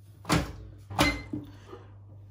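Two sharp knocks, about two-thirds of a second apart, from the door of a Hotpoint countertop microwave oven being handled and shut, followed by a smaller click, over a low steady hum.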